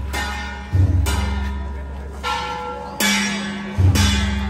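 Temple-procession percussion: a big drum and gongs struck in a slow, uneven beat, roughly one stroke a second. The deep drum thuds come about a second in and again near the end, and the gong strokes ring on and fade between hits.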